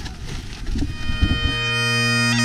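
Bagpipes striking in about a second and a half in: a steady low drone and a held chanter note start together and sound on, after an irregular low rumbling noise.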